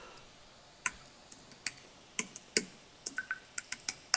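Typing on a computer keyboard: light, irregular keystroke clicks starting about a second in, as a short command is keyed in.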